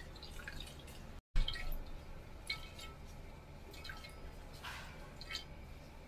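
Chili juice dripping and trickling through a fine mesh strainer into a stainless steel pot, in irregular small drips and splashes.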